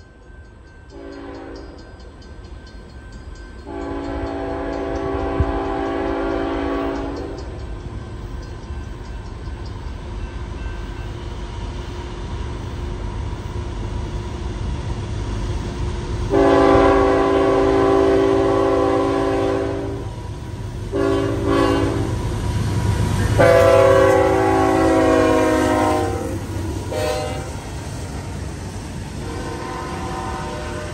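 Air horn of CSX ET44AH locomotive 3301, leading a freight train, sounding a series of blasts as the train approaches and passes: three long blasts with several short ones between. Under the horn, the low rumble of the locomotives and the train on the rails grows louder as it comes near.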